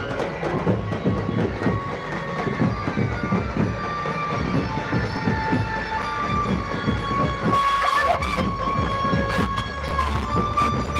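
Loud music from a DJ truck's stacked loudspeakers, with a fast thumping low end and long held high tones over it.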